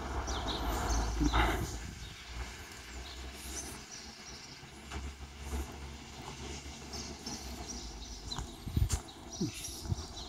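Quiet outdoor background: a low rumble at first, then faint scattered high chirps, with a single sharp knock near the end.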